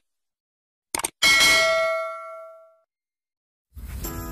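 Subscribe-button sound effects: a short click, then a single bell ding that rings out and fades over about a second and a half. Music comes in just before the end.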